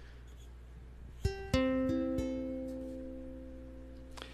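Plugged-in ukulele with its four open strings plucked one after another, G, C, E, then A, and left to ring and slowly fade. It sounds like a tuning check before playing.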